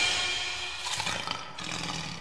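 A lion's roar sound effect in a short intro sting, with the sting's music fading out beneath it; the roar comes in two rough surges before the sound dies away.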